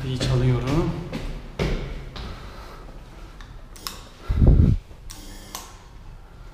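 A man's voice murmuring briefly, then knocks and footstep sounds in a stairwell, with one loud low thump about four and a half seconds in and a short hiss just after.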